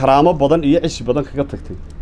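Only speech: a man talking in Somali, in a steady, emphatic delivery.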